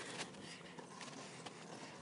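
Faint footsteps on concrete: a few soft, irregular taps over a light hiss.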